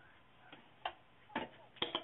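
A few faint, short clicks and taps, about five of them spread irregularly over two seconds, against a quiet room background.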